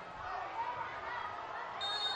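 Stadium crowd noise with faint voices, then near the end a short high steady whistle blast, the referee's signal to take the free kick.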